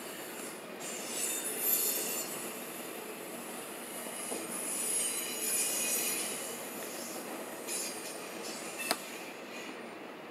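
Norfolk Southern intermodal freight cars rolling past, their steel wheels squealing high in spells, loudest about two seconds in and again around five to six seconds. A sharp click comes near the end.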